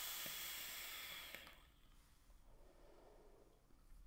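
Steady hiss of air being drawn through a vape's Wasp Nano dripping atomizer during a long inhale. It fades out about a second and a half in, then near silence while the vapour is held.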